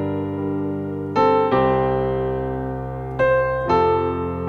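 Piano keyboard playing slow, held chords, moving from G minor to F major, with new chords and notes struck about a second in and again near the end.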